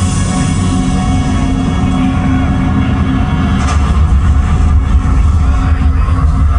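Concert intro soundtrack played loud over an arena PA: a heavy, steady low drone under sustained tones, with no singing.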